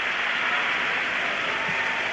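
Steady crowd noise from spectators in a sports hall, applauding and cheering just after a goal.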